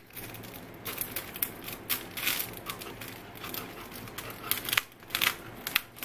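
Scissors cutting a sheet of clear plastic wrapping film, in irregular snips with a few louder ones, the film rustling between them.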